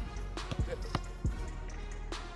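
Football being kicked and touched on artificial turf: about five sharp thumps of boot on ball spread over two seconds.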